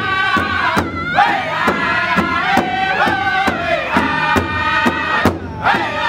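Powwow drum group of men singing loudly in unison while beating a large shared powwow drum in a steady beat, a little over two strikes a second. The voices break off briefly about a second in and again near the end while the drum keeps going.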